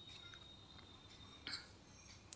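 Near silence: faint handling sounds of a wooden rolling pin rolling out roti dough on a board, with one brief soft sound about one and a half seconds in as the dough sheet is lifted.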